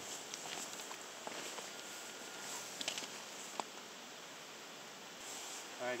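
Steady rush of a small river's flowing water, with a few brief faint clicks from gravel and handling.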